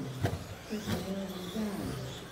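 Radio-controlled stock-class racing trucks running on the track, their motors whining in pitches that rise and fall with throttle. Two sharp clacks sound, about a quarter-second and about a second in.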